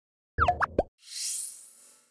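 Electronic sound effects of a news channel's animated end card: a quick run of short, bubbly popping notes that glide in pitch, then a high, airy, rising shimmer that fades away.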